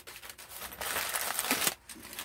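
Rustling of a fabric toiletry bag being handled and opened by hand, louder in the middle and stopping short near the end.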